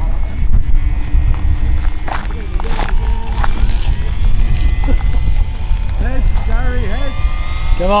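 Wind buffeting the microphone as a heavy rumble, over the thin steady whine of an electric model plane's motor that rises slightly in pitch about four seconds in. A few faint voices come in near the end.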